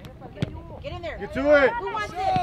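Several voices shouting at once across an open soccer field during play, the loudest call about one and a half seconds in. There is one sharp thump about half a second in.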